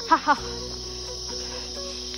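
Steady high-pitched drone of insects, under background music of held notes, with a short burst of voice at the very start.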